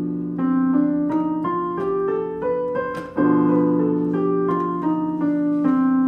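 Piano playing the C melodic minor scale, one note at a time, over a held B diminished chord. The scale is the jazz form, with the same notes up and down. It rises for about three seconds, the chord is struck again, and the scale comes back down.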